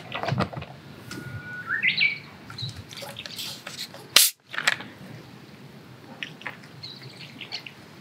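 Wild birds chirping with short whistled calls, one of them climbing in pitch in steps, among light clicks and knocks; a single sharp click about four seconds in is the loudest sound.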